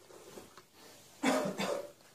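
A man coughing: two short coughs in quick succession a little over a second in, in a small room.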